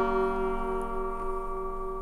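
Acoustic guitar's last strummed chord ringing on and slowly fading away.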